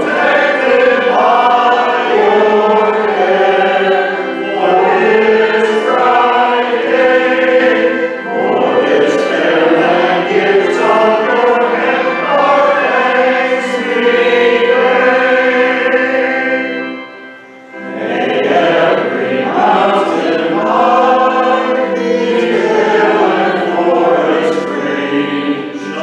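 A group of voices singing a hymn in phrases, with a short breath pause about 17 seconds in.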